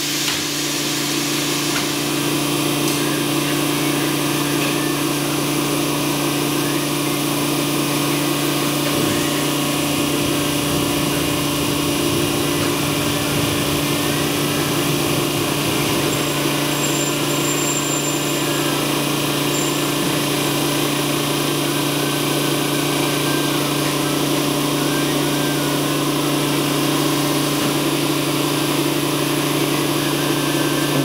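Large thermoforming press running in its cycle: a steady motor hum with two constant low tones. From about 9 to 16 seconds a lower rumble joins it as the loaded table travels into the press.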